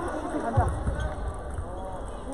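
Echoing sports-hall background of distant voices, with one dull thud about half a second in.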